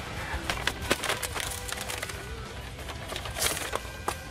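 A thick paper envelope being torn open and the letter pulled out: a run of short rips and rustles, the loudest near the end, over soft film-soundtrack music.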